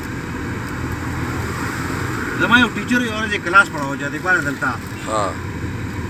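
Car engine and road noise heard from inside the cabin while driving, a steady rumble. A person's voice talks over it in the second half.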